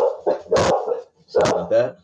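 Dogs barking in a couple of short bursts, one at the start and another about a second and a half in.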